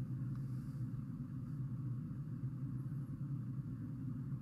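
A steady low hum of background noise, with no other event.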